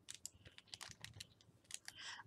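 Faint, quick, scattered light clicks and taps as small wrapped packets are handled and sorted by hand.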